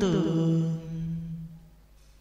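A voice chanting Vietnamese verse draws out the last syllable of a line on one held low note, which fades away about a second and a half in.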